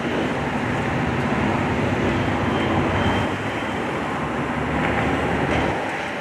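Steady rumble of heavy city street traffic, fading in at the start.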